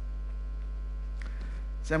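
Steady low electrical mains hum from the sound system during a pause in speech, with a man's voice starting again near the end.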